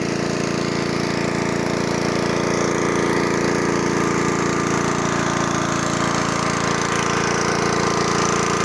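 King Max engine-driven water pump running steadily at a constant pitch, pushing water through the field's hose line. Its drone grows slightly louder over the first few seconds.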